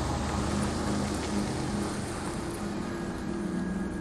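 A car engine running, a steady low hum, as the taxi pulls away.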